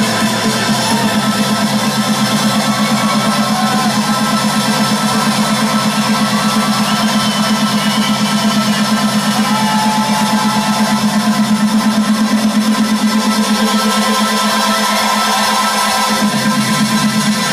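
Loud electronic dance music from a DJ set, playing continuously with a steady, fast low pulse under it.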